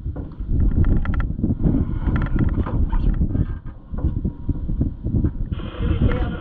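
Inside an off-road race car's cab: engine and drivetrain running under steady loud road noise, with the chassis rattling and knocking irregularly over rough dirt. A steady hiss cuts in just before the end.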